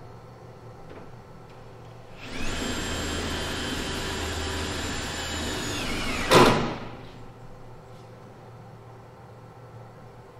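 A handheld power tool runs with a steady high whine for about three and a half seconds, starting a couple of seconds in. Its pitch sags just before it ends in one loud, harsh burst and stops.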